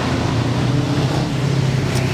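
Street traffic: a motor vehicle engine running close by, a steady low hum that stays level.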